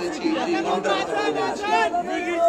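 Speech: a man preaching in Bengali through microphones and a public-address system.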